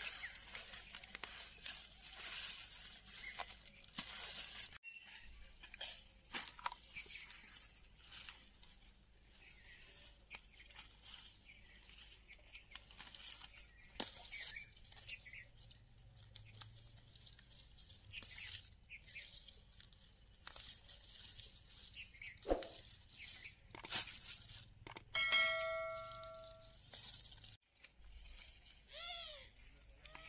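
Spinach leaves being snapped off and rustled by hand: faint, scattered crisp snaps and rustling. About five seconds before the end, a brief ringing tone sounds for about a second.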